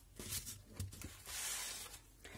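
Clear plastic stamp sleeves and papers rustling and sliding across a cutting mat as they are pushed aside, with a few light clicks in the first second and a longer rustle in the second.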